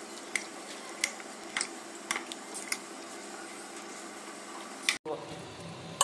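Spoon mixing marinated chicken pieces in a glass bowl, with a few sharp clinks of the spoon against the glass in the first three seconds.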